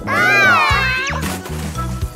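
A single long meow, rising and then falling in pitch, voiced for a cat-costumed cartoon character, followed by a short rising glide about a second in, over children's background music.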